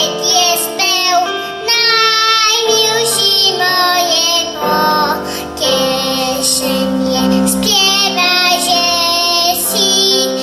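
A young girl singing a Slovak folk song, with instrumental accompaniment holding steady chords beneath her voice.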